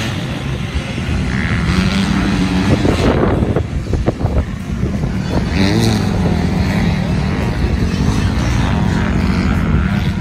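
Several dirt bike engines revving up and down as the bikes ride and turn, their pitch rising and falling over one another.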